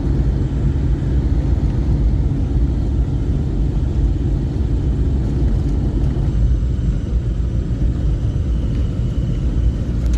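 Steady low rumble of a van's engine and tyres on the road while driving, heard from inside the cabin.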